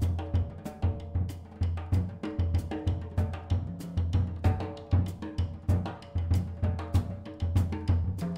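Jazz drum kit played busily: rapid snare, bass-drum and cymbal strokes in a swinging rhythm, over a pulsing upright-bass line with piano notes underneath.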